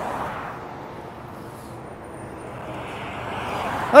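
Road traffic passing: the tyre and engine noise of a passing car fades, quietest about two seconds in, then grows again as the next vehicles approach.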